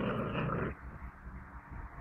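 Seven-week-old puppies growling as they tug at a leash together: a loud rough burst in the first second, then quieter.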